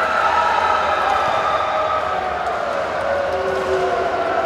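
Long, drawn-out shouted calls from several voices in a large sports hall, overlapping and slowly sliding in pitch.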